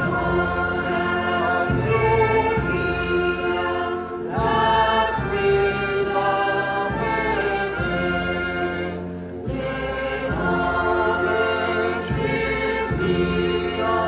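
A choir singing a sacred hymn with instrumental accompaniment. It moves in long held phrases, with short breaks between them about four and nine and a half seconds in.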